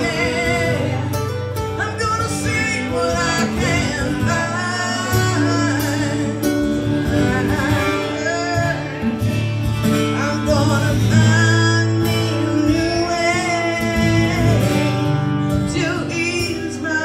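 Live country band playing: voices singing over acoustic guitar, with band backing.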